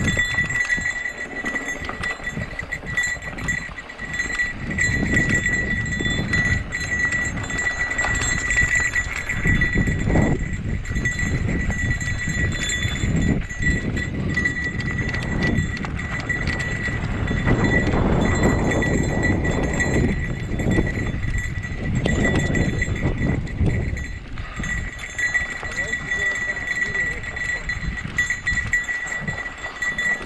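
Mountain bike ride on a dirt singletrack heard from a rider-mounted camera: wind buffeting the microphone and tyres rolling over dirt and rocks with the bike rattling, swelling and easing unevenly. A steady high-pitched whine runs underneath.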